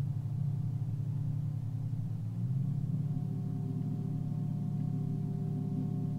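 Meditation background music: a low gong-like drone that wavers rapidly, with higher held tones joining about halfway through.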